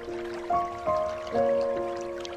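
Slow, soft piano music: three new notes struck in the first second and a half, each ringing on and fading. Underneath it is a faint background of trickling, dripping water.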